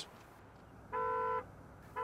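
A single short horn toot, one steady note held for about half a second, starting and stopping abruptly about a second in.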